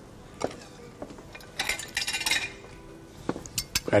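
A metal utensil clinking and scraping against a frying pan as fish fillets are lifted out: a click about half a second in, a longer scrape around the middle, and several light clicks near the end.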